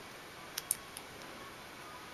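Scissors snipping a small punched paper petal: three short, faint snips between about half a second and a second in, over a faint steady hiss.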